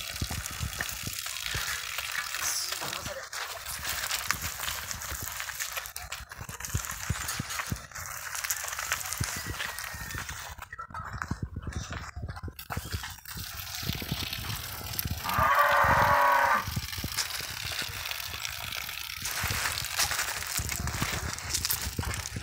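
One long moo from the cattle, about two-thirds of the way through, lasting a second and a half. Around it are scuffing and crackling noises of hooves moving on gravel.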